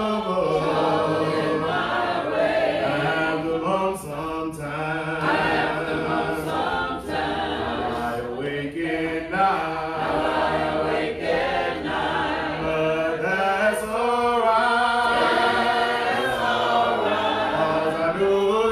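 Congregation singing a hymn a cappella in unaccompanied harmony, led by a man's voice at the pulpit microphone.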